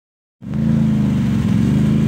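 ATV engine running at a steady pitch, cutting in about half a second in.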